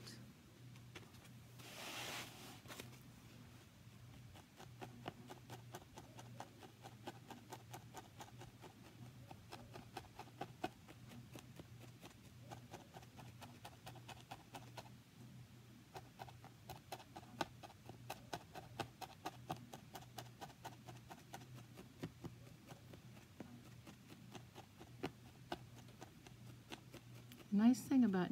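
Barbed felting needle stabbing rapidly and repeatedly into wool roving over a foam pad, a steady train of faint crunchy pokes; the sound is the sign that the needle is catching and driving in the wool fibres. A brief rustle of handled fibre about two seconds in.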